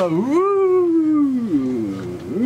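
A man's long gleeful whoop, 'yoo-hoo!': one drawn-out call that swoops up and then slowly glides down in pitch for about a second and a half.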